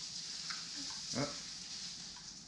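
A baby makes one short vocal sound about a second in, over a steady background hiss.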